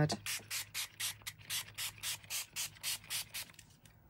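A fine-mist spray bottle pumped rapidly, about a dozen short hissing sprays at roughly four a second, wetting the ink-dyed linen so the colours spread. The spraying stops shortly before the end.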